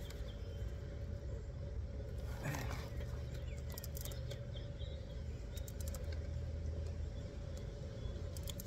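Baitcasting reel being cranked while fighting a hooked fish, with groups of short sharp clicks over a steady low rumble.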